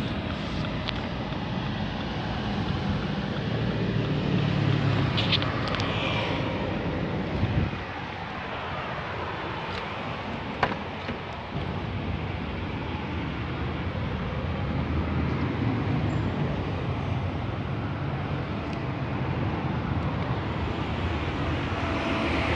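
A 2013 Dodge Journey's 2.4-litre four-cylinder engine idling steadily, with a single sharp click about ten and a half seconds in.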